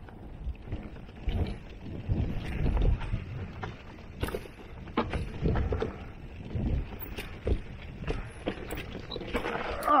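Mountain bike rolling down rocky, leaf-strewn singletrack: tyres crunching over dirt, leaves and rocks, with repeated knocks and rattles through the frame and wind noise on the microphone. It ends in a louder clatter as the rider goes down in a crash.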